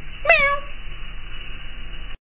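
A cat's single short meow about a quarter of a second in, falling in pitch, over a steady hiss.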